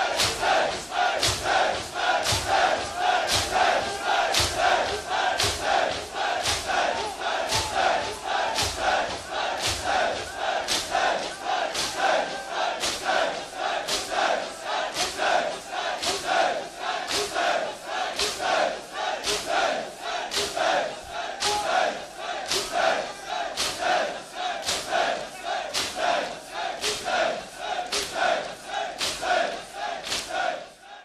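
A large crowd of mourners beating their chests in unison, about three strikes every two seconds, while chanting together in the same rhythm.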